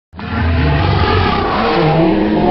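Loud, rough intro sound effect with a deep rumble beneath, starting abruptly.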